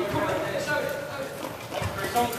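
Players' voices calling out across an echoing sports hall during a wheelchair basketball game, with a few sharp knocks, one of them near the end, from the ball and wheelchairs on the wooden court.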